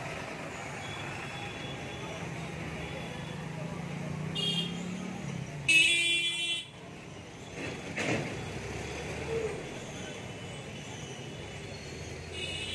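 Street traffic noise with a vehicle's engine rumble swelling and passing, and a vehicle horn: a short toot, then a loud honk about a second long a little before the middle.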